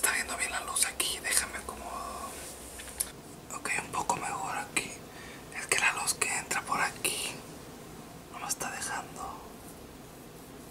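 A man whispering in short breathy phrases with pauses, his voice kept down to an unvoiced hush.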